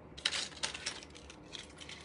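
Metal costume jewelry clinking and jingling as it is picked up and handled. A quick run of light metallic clicks begins a moment in and thins out toward the end.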